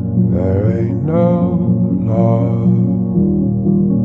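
A slowed-down song playing: sustained low chords, with a melodic line on top in short gliding phrases about a second apart.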